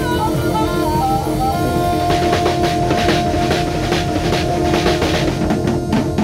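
Live band with a harmonica up front: the harmonica plays a short falling run of notes, then holds one long note, over drum kit, electric guitar and bass, with cymbal hits growing busier about two seconds in.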